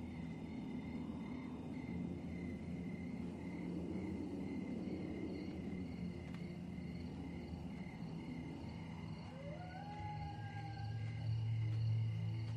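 Night-time woodland ambience: crickets chirping in an even, steady pulse over a low sustained drone. Near the end a wail rises and then holds.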